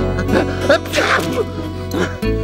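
Cartoon soundtrack music with a character's short squeaky vocal noises and a sneeze about a second in, fitting the porcupine's head cold.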